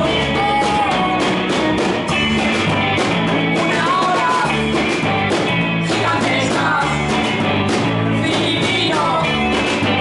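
Live rock and roll band playing: electric guitars and a small drum kit of snare and floor tom, with a sung lead vocal over a steady driving beat.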